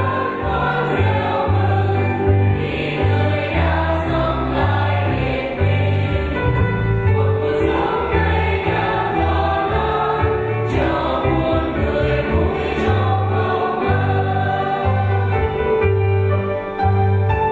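A choir singing a hymn, with instrumental accompaniment and a steady bass line moving from note to note.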